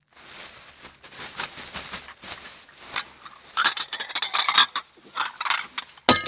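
Sound effect of knick-knacks being packed into a sack: rustling with irregular small clinks and rattles, busiest and loudest from about three and a half to five seconds in.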